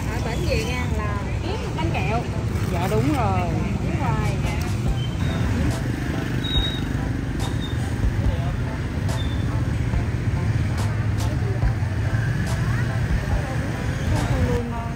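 Street traffic running steadily, with people talking over it in the first few seconds and a few light clicks later on.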